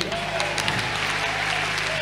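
Church congregation applauding: a steady, even wash of many hands clapping.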